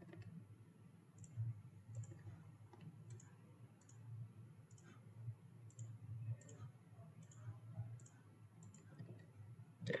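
Faint computer mouse clicks, about a dozen, spaced roughly half a second to a second apart, over a low steady hum.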